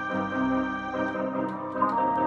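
Yamaha electronic keyboard playing a melody over held chords and a bass line, with a new high note struck and held near the end.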